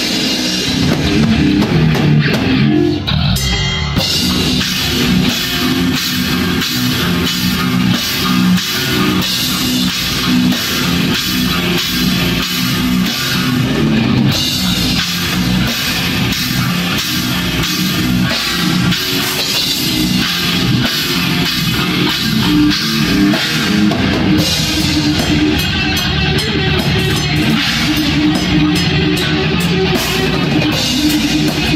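A metal band playing live: distorted electric guitar riffing over bass and fast, dense drumming, loud throughout.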